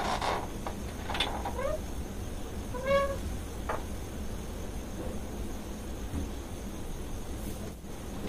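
A steady low room hum with a few brief pitched vocal calls. The clearest is a short call that rises and falls about three seconds in.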